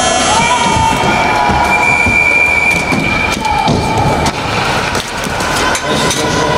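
Loud ice-arena din at the end of a hockey game, with steady held tones standing out over the noise for about the first three seconds.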